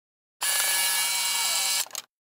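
An edited-in sound effect: a steady hissing noise that cuts in abruptly about half a second in and stops just as abruptly about a second and a half later.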